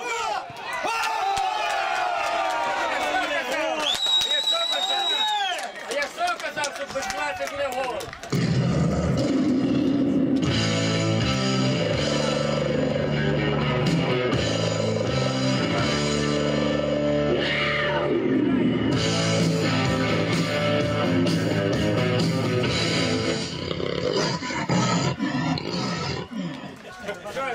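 Excited shouting after a goal, with a whistle blown in one steady blast of about two seconds about four seconds in. From about eight seconds in, rock music plays until near the end.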